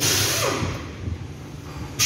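A sudden hissing rush that fades over about a second, with a brief falling whine in it, over a steady low hum; a second hiss starts suddenly at the very end.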